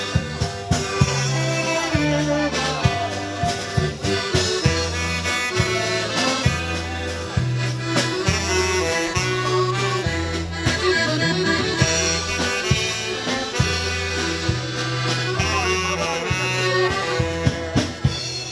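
Live folk dance-band music: an instrumental passage led by accordion over a repeating bass line and a steady beat, with no singing.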